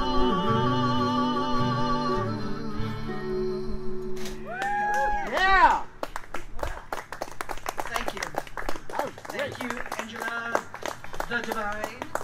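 Singers hold the last note of a folk song with vibrato over acoustic guitar and mandolin, finishing with a short rise-and-fall vocal flourish at about five seconds. The song then cuts off and the audience applauds.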